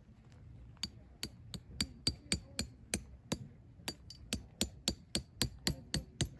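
Metal tent stake being hammered into the ground: a quick run of sharp metal-on-metal taps, about three or four a second, starting about a second in, some with a brief ring.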